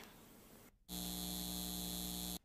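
Faint room tone, then a brief drop to dead silence, after which a steady electrical buzzing hum with many overtones starts abruptly about a second in and holds level.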